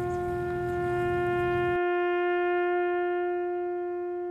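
A brass horn holds one long, steady note, a slow musical call. A low background rumble under it cuts out about two seconds in.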